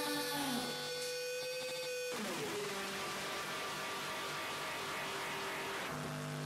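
Electronic music outro with the beat gone: a held synth tone that slides down in pitch about two seconds in, then a steady wash of noise and hum.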